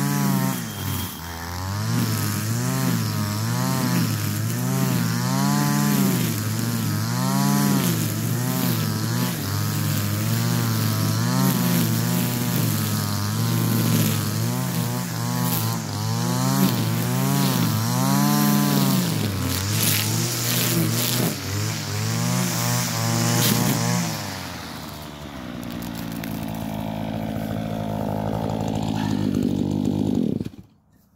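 String trimmer (whipper snipper) cutting long grass, its small engine revving up and down about once a second with each swing. About 25 seconds in it drops to a steady, quieter idle.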